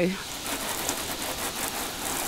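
Garden hose spray gun spraying water onto the front bodywork of a motorhome: a steady hiss of water hitting the panels.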